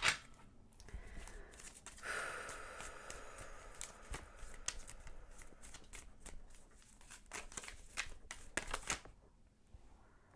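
Tarot deck being shuffled by hand: a run of quick card-on-card clicks and soft sliding rasps.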